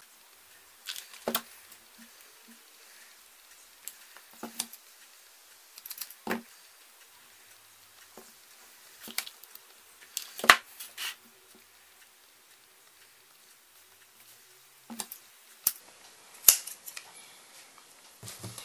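Sporadic light clicks and taps from hot-gluing a cord end: a glue gun and twisted cord handled on a tabletop. About a dozen short clicks are spread out, with one louder click about ten seconds in.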